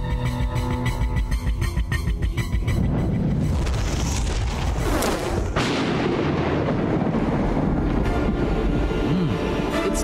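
Dramatic film music with held tones gives way to a thunderstorm effect: a building rumble, a sharp thunderclap about five seconds in, then steady storm noise.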